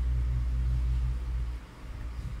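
A steady low rumble that cuts off about a second and a half in.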